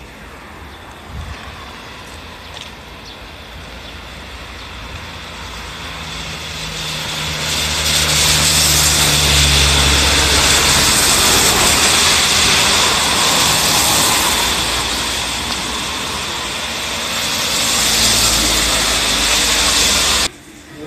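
Vehicles passing on a rain-wet road, tyres hissing on the wet surface with a low engine hum under the first. One vehicle swells up over several seconds and fades, and another passes near the end.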